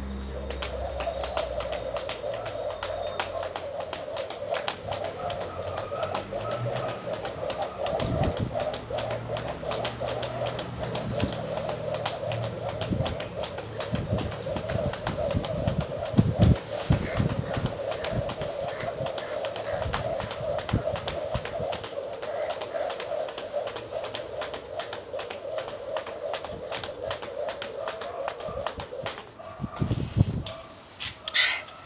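Jump rope turning continuously through a set of skips: a steady whirring of the rope through the air with quick, even ticks as it slaps the ground, stopping about a second before the end.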